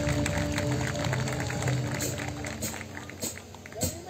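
Live band holding a chord that rings out and fades about three seconds in.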